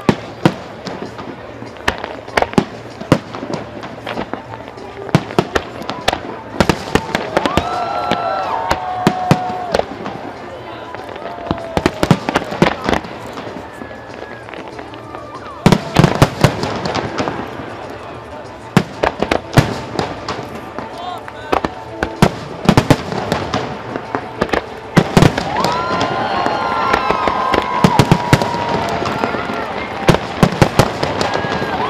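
Fireworks display: aerial shells bursting in a rapid, irregular series of sharp bangs and crackles. The loudest bangs come near the middle, and a denser run of bursts fills the last few seconds.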